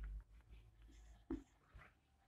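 Faint strokes of a marker writing on a whiteboard.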